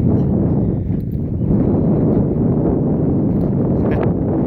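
Wind buffeting the phone's microphone: a steady, loud, low rumble.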